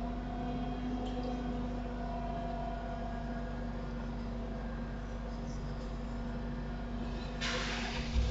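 Steady hum and fan noise from the recording computer, holding a few constant tones, with a short rustle near the end.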